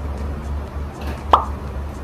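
A single short 'plop' sound effect about two-thirds of the way in, a click with a pitch that drops quickly, over a steady low hum.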